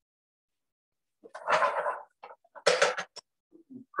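A man sniffing sharply twice, taking in the smell of the cooking: a longer breath about a second and a half in and a shorter one near three seconds.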